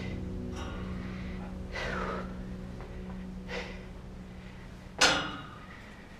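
A climber's heavy breathing, several breaths a second or so apart, with a louder sharp gasp about five seconds in, over a faint steady hum.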